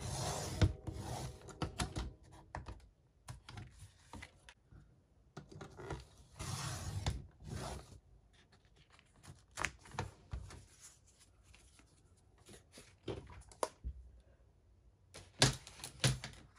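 Sliding paper trimmer's blade run through thick embossed paper: two long scraping cuts a few seconds apart, followed by paper handling with scattered taps and rustles.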